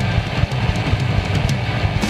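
Loud rock music from a band, a drum kit keeping a steady beat under guitar.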